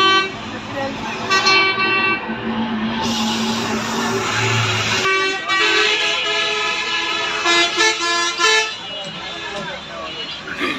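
Street traffic with vehicle horns sounding in long steady blasts, several in turn, over voices of people around. About three seconds in, a loud hissing buzz lasts about two seconds.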